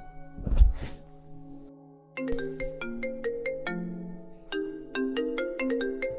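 A dull thump about half a second in, then, after a moment of near silence, background music of quick, bell-like mallet notes playing a melody.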